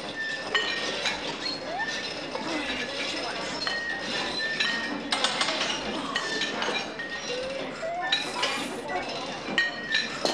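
Repeated metallic clinks and clanks of barbells and weight plates, with short ringing notes, over background voices.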